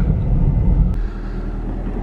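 Car driving, with engine and road rumble heard from inside the cabin. About a second in it changes to a steadier, quieter tyre hiss of a pickup truck driving past on the street.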